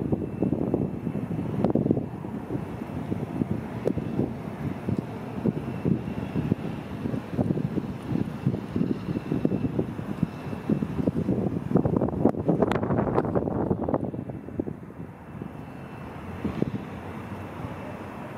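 Steady low outdoor rumble that swells louder and brighter about twelve to fourteen seconds in, then settles.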